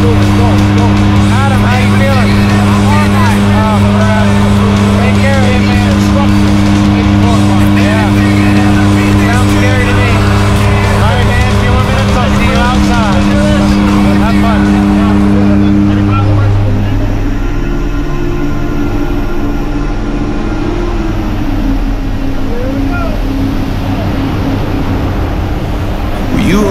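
Steady drone of a jump plane's propeller engines inside the cabin, with voices and background music over it. The drone changes and drops a little about two-thirds of the way through.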